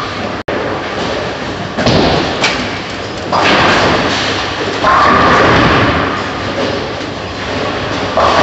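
Bowling alley din: bowling balls thudding onto the lanes and rolling, over a steady hall noise that steps up in loudness about three seconds in and again about five seconds in. A brief dropout cuts the sound about half a second in.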